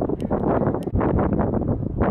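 Wind buffeting the camera microphone, a loud, gusty rush of noise.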